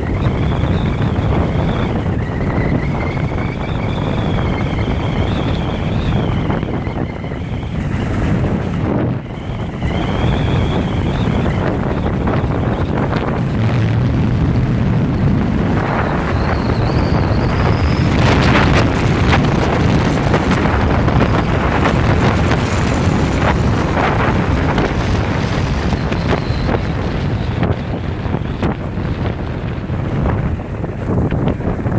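Loud wind rushing and buffeting over the microphone of a camera carried by a downhill skier, with a thin wavering whistle over the first ten seconds or so.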